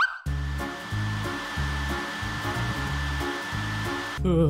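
Hair dryer running with a steady hiss and a thin high whine, over background music with a bouncing bass line. A short rising swoop opens it.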